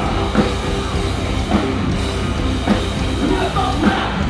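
Live rock band playing loud, with electric guitar and a drum kit keeping a steady beat.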